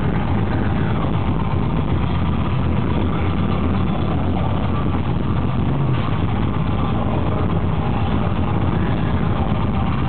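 Black metal band playing live: a loud, steady, dense wall of heavily distorted guitars and drums.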